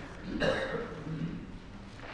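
A man clearing his throat: a short rasping burst about half a second in, followed by a low voiced grunt.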